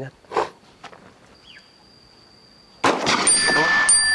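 A single pistol shot a little under three seconds in, fired at a water-filled plastic bottle target and knocking it over; loud sound carries on after the shot.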